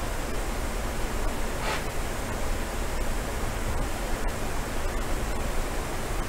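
A steady, even hiss with nothing else standing out.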